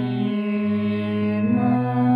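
A teenage boy singing a raga in Hindustani classical style, holding long wordless vowel notes in the slow opening alaap. He steps up to a higher note about one and a half seconds in.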